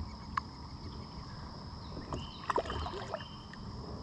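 Fishing kayak sitting on calm water: faint water sounds against the hull, with a sharp click about half a second in and a few light clicks and knocks of gear being handled around two and a half seconds.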